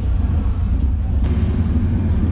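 A steady low rumble, with a faint click a little past a second in.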